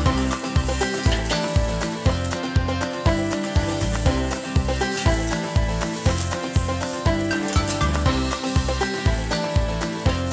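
Background music with a steady bass beat, over a faint sizzle of pork tenderloin searing on the grill grate over direct fire.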